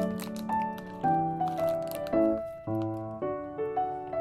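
Background music: a gentle melody over soft chords, with notes and chords changing about every half second.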